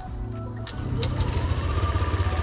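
Yamaha Aerox 155 scooter's single-cylinder engine idling through its stock exhaust, a smooth, steady low pulsing that grows a little louder about half a second in.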